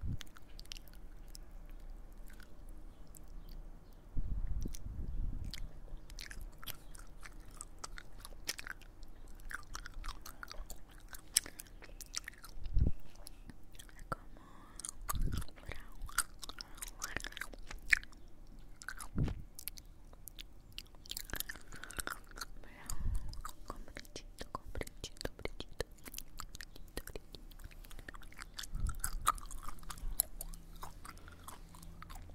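Close-miked wet mouth sounds: sticky clicks and smacks of chewing gum and lips right at a handheld recorder's microphones, scattered throughout, with a few low thumps in between.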